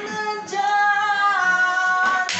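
A man singing a song in a high voice, holding long notes.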